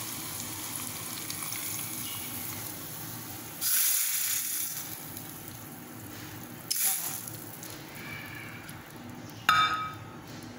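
Hot desi ghee tarka with fried onions and red chillies poured from a small steel pan onto cooked dal, sizzling. The sizzle flares loudly about four seconds in and again near seven seconds. A short ringing clink near the end is the loudest moment.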